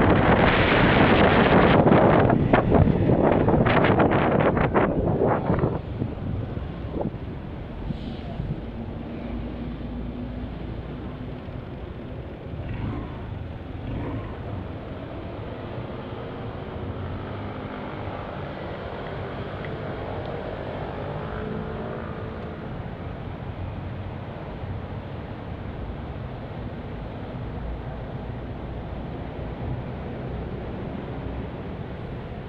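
Wind noise on the microphone of a moving motorcycle, loud for about the first six seconds, then dropping off as the bike slows and stops. After that, a steady low hum of the motorcycle idling amid passing city traffic.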